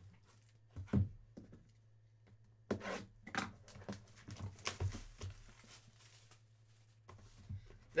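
A cardboard trading-card box being handled: a knock about a second in, then rubbing and scraping as its outer sleeve is slid off.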